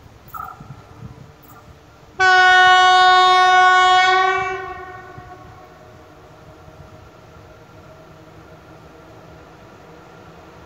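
Electric locomotive horn of an EP07 sounding one long blast of about two seconds, starting suddenly about two seconds in and fading out over the next second with a slight drop in pitch. Afterwards a faint steady hum comes from the approaching train.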